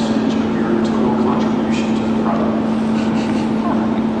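A man's voice talking to a room, over a constant low hum.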